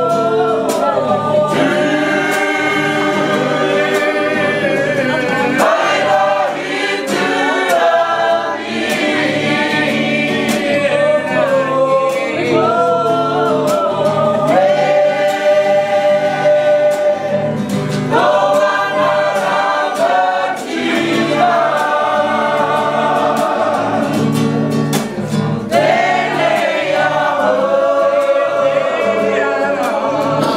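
A group of men and women singing together in chorus, several voices holding long notes in phrases, with brief pauses between phrases.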